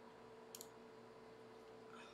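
Near silence with a single faint computer mouse click about half a second in.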